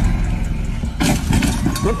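Golf cart driving over rough grassy ground, heard through a phone recording as a loud, steady low rumble with a noisy hiss; voices join in about a second in.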